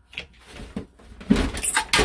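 Bench bottle capper pressed down on a glass beer bottle, crimping a crown cap onto it: light handling knocks, then a burst of loud clunks and a metallic rasp in the last half second or so.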